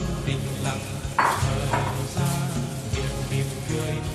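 Background music with held notes, and about a second in a short scraping noise as custard mixture is poured from a porcelain bowl into a metal mould.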